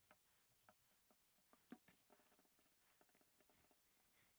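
Near silence, with a few faint short clicks and taps scattered through it, the most noticeable a little under two seconds in.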